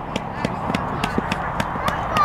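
A rapid, uneven series of sharp clicks, about five a second, over background voices.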